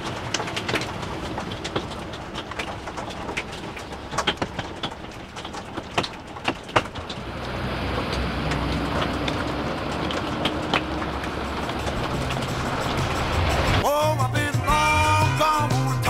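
Hailstones and heavy rain pelting a camper van's roof and windscreen, heard from inside the cab as many sharp ticks over a steady rain noise. About halfway through, music fades in and takes over near the end.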